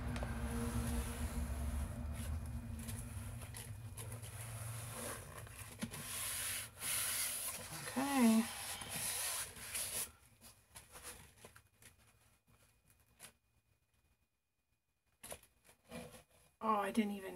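Gloved hands rubbing and pressing on the back of a canvas, a dull rustling and scuffing noise that fades out after about ten seconds. A brief hummed 'mm' comes about eight seconds in.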